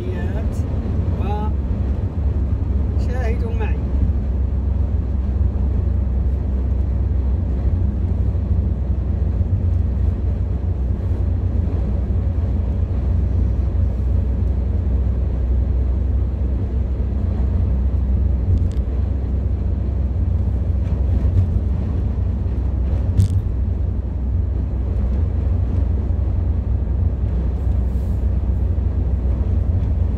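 Steady low road and engine rumble heard inside a car cruising at motorway speed.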